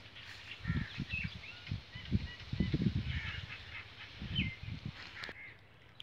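Short bird chirps, some with a small falling glide, over a string of low, muffled bumps and rustles from crop stalks and leaves brushing the phone.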